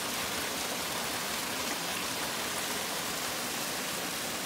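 Mountain spring water pouring from a pipe outlet into a stone pool, with more water running over the pool's low weir: a steady splashing rush.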